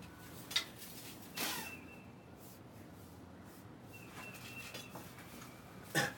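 Quiet outdoor background with a sharp click about half a second in, a brief scuff about a second and a half in, and another click at the very end, from a person moving about on a paved porch.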